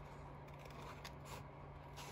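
Scissors cutting painted watercolour paper: a few faint, separate snips.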